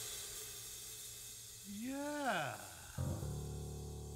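The jazz trio's final chord and cymbal ringing and dying away. About two seconds in a brief voice slides up and down, and about a second later a single low instrument note starts and rings on.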